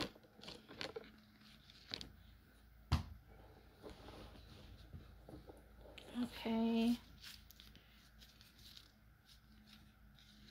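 Tarot cards being drawn and handled: a few sharp card clicks in the first three seconds with faint rustling between them. About six and a half seconds in, a woman gives a short hummed "mm".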